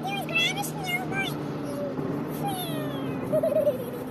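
A high-pitched voice with wavering, drawn-out tones, one held note near the end, over the steady low drone inside a moving car.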